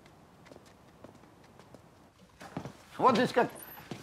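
A few faint, irregular knocks, then a man's voice starts speaking near the end.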